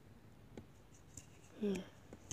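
A few faint scattered clicks and scratches, then a brief vocal sound near the end.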